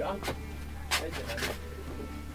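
Quiet voices with a few sharp clicks and knocks, about three of them, over a steady low hum.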